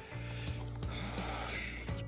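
Background music with a steady low bass note under it.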